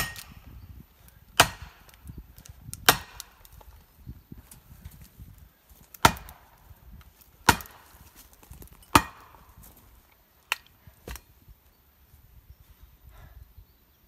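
Axe chopping into the trunk of a large conifer: six sharp strikes about a second and a half apart, with a pause after the third, then two lighter strikes, the blows echoing.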